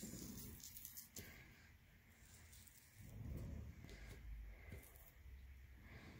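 Near silence, with faint handling sounds of fingers placing and pressing a glued pipe cleaner onto paper.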